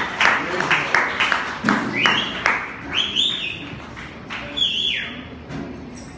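Acoustic-electric guitar strummed in sharp chords as the song ends, with whoops and whistles from a small audience.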